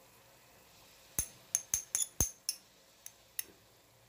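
A metal spoon clinking against a small container while spice is measured out: about eight light, ringing clinks over two seconds.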